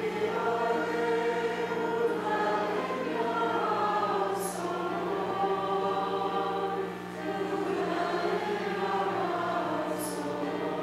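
A choir singing a slow psalm refrain in sustained, legato lines.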